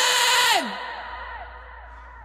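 A man's last sung note, breathy and dropping in pitch, cuts off about half a second in. It leaves a fading echo effect that repeats the falling tail about three times a second.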